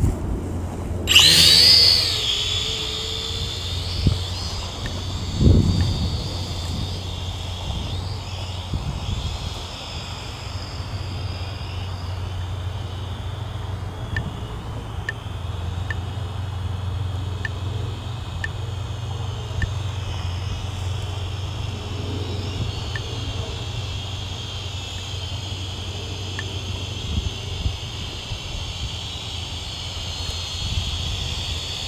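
Small quadcopter's electric motors whining: the pitch rises sharply about a second in as the throttle is pushed up, then holds a wavering high whine as it flies. Under it is a steady low rumble.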